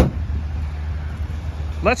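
The Kia Sorento's V6 engine idling steadily, a low even hum, with a sharp click at the very start.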